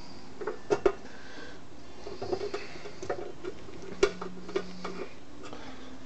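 Scattered light clicks and clinks of small screws being handled and started by hand into a metal cover. The sharpest is a pair of clicks just under a second in and another at about four seconds.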